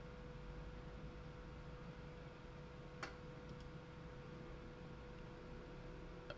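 Quiet room tone with a steady faint hum, broken by a single sharp click about three seconds in and a couple of fainter ticks just after.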